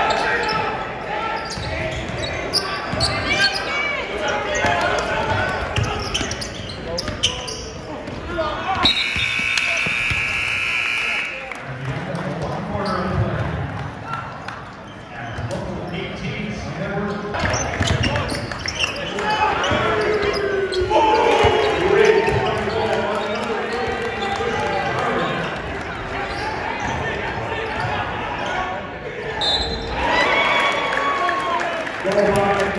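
Basketball game in a large gym: the ball bouncing amid players' and spectators' shouting. About nine seconds in, the arena buzzer sounds steadily for about two and a half seconds, marking the end of the first quarter.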